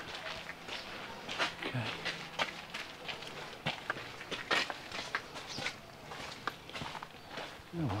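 Footsteps of people walking on a gravel path: a run of irregular steps, about two or three a second.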